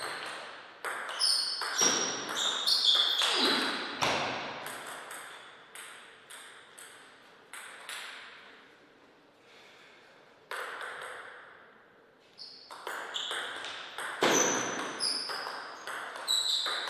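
Table tennis ball clicking back and forth off the paddles and the table during rallies, each hit with a short high ping. The hits come in quick runs, thin out into a few loose bounces in the middle, stop for a second or so, then pick up again.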